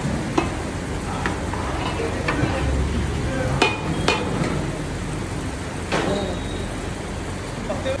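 A long-handled metal ladle stirring a large pot of chicken curry over a wood fire, knocking sharply against the pot about six times at uneven intervals, over a steady sizzle.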